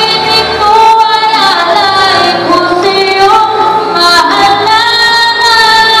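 A young girl singing a Tagalog ballad into a microphone over musical accompaniment, holding long notes with a slight waver.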